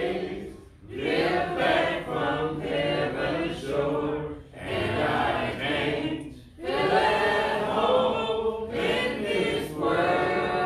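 A church congregation singing a hymn a cappella, several voices together without instruments, in sung lines with brief breaths between them.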